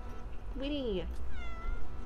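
Domestic cat meowing twice, each call bending down in pitch at its end: a cat asking to be let outside.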